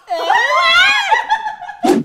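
A woman's long, high, wavering scream. A sharp thump comes near the end.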